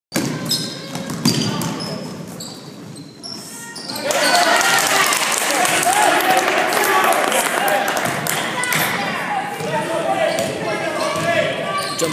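Basketball game on a hardwood gym floor: the ball bouncing and short high squeaks typical of sneakers, then from about four seconds in a loud jumble of crowd and player voices echoing in the hall over the play.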